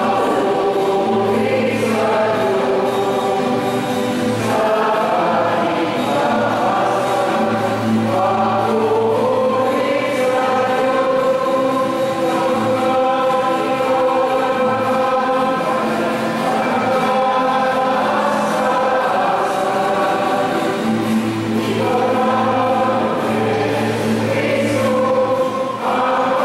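Church choir singing a slow hymn in long held notes, with a steady low accompaniment underneath.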